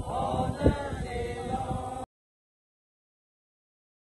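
A group of mourners singing together, with a single thump just under a second in. The singing cuts off suddenly about halfway through.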